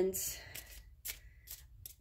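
Tarot cards being handled: a brief soft rustle followed by a few light clicks of card against card.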